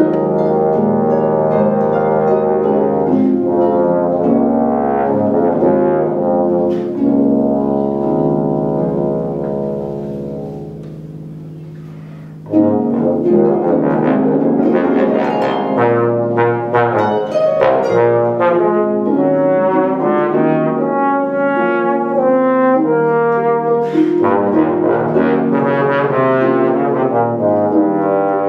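Bass trombone playing long held notes that die away in a slow fade about ten to twelve seconds in, then coming back in suddenly and loud with shorter, detached notes, with harp accompaniment.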